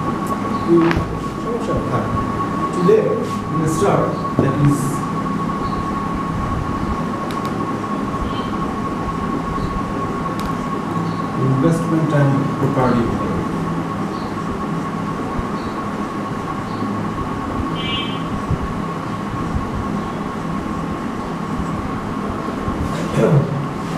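A marker writing on a whiteboard, with a few faint strokes and squeaks, over a steady droning background noise that carries a constant high whine.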